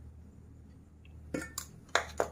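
A spoon clinking against bowls three times in quick succession while spooning cornflour into a stainless steel mixing bowl, after a quiet start with a faint low hum.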